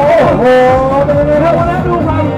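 Subaru Impreza engine running under load as the car is driven balanced on two wheels. Its note dips briefly near the start, then holds and rises slightly, over loud background music and voices.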